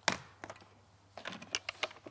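Hard plastic clicks and taps from a food processor's lid being unlatched and lifted off its bowl after blending: one sharp click at the start, then a quick run of small clicks in the second half.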